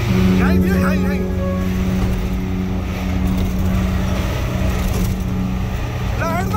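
A vehicle engine running at a steady pitch over road rumble, with brief voices about half a second in and again at the end.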